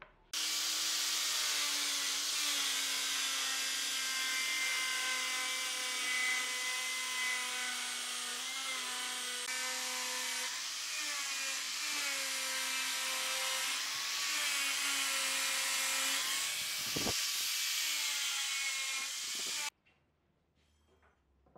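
Handheld electric sander with a round pad running against wood, a steady motor whine whose pitch dips slightly as it is pressed into the work. It cuts off suddenly near the end.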